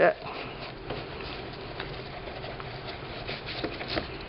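A damp paintbrush spreading glue paste over fabric on a book cover: faint, soft brushing strokes.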